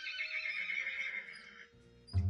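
A horse whinnying from a television's speaker: one long quavering call that fades out near the end, over soft background music.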